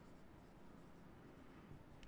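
Near silence, with the faint sound of a marker writing a word on a whiteboard.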